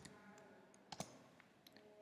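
Near silence with a few faint clicks from a computer keyboard: one at the start and a quick pair about a second in.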